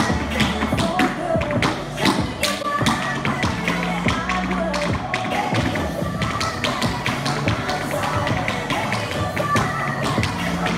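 Tap shoes striking a hard studio floor in quick, rhythmic improvised tap steps, many sharp clicks in a row. A pop song with a steady beat plays underneath.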